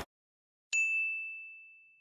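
A single bright ding, a bell-like chime struck about two-thirds of a second in, holding one steady pitch and fading away slowly.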